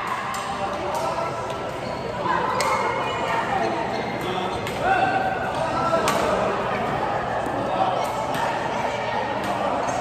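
Badminton doubles rally: rackets striking the shuttlecock in short sharp cracks, now and then, with sports shoes squeaking on the court floor, in a large echoing hall.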